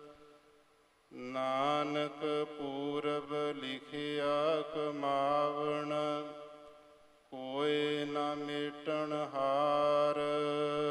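Gurbani verses chanted by a single voice in a slow melody, in two long held phrases that begin about a second in and again past seven seconds, each fading almost to silence before the next.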